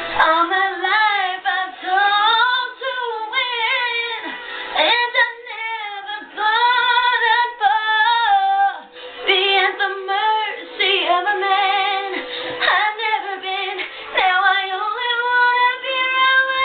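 A female voice singing a melody, with wide vibrato on the held notes, over steady low backing notes.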